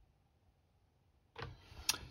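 Near silence for over a second, then faint room sound with one sharp click near the end, as fingers handle a tiny plastic model part.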